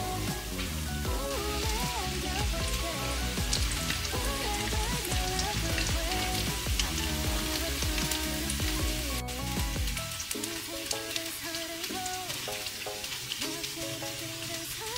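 Background music over the steady crackling sizzle of panko-breaded tofu fingers shallow-frying in oil in a pan. The music's bass drops out about ten seconds in.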